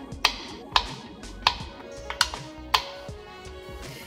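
A small knife cutting pieces off a wax crayon on a bamboo cutting board: about five sharp taps, roughly every half second to three quarters of a second, over background music.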